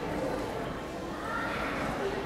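Indistinct background voices and general sound of a large sports hall, with no clear words.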